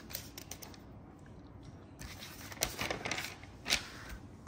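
Glossy magazine pages being handled and turned: faint handling at first, then a few short, sharp paper rustles and flaps in the second half.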